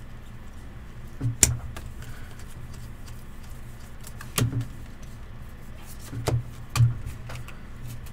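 Stack of trading cards being handled and flipped through, giving four sharp taps and knocks over a steady low hum.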